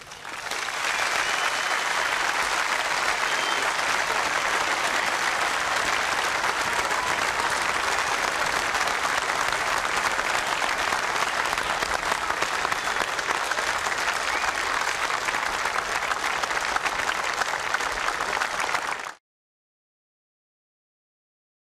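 Large crowd giving a standing ovation, steady dense applause that cuts off suddenly near the end.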